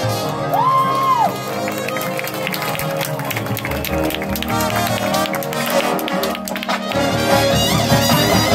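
Marching band playing brass-heavy music with drums and mallet percussion. One high brass note bends up and falls away about half a second in, then sharp percussion strikes drive the middle.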